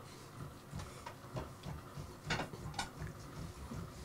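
Faint, scattered clicks and light knocks of plates, glasses and bottles being handled on a wooden table during a meal.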